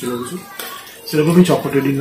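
A man's voice talking, with a brief lull about half a second in before he speaks again.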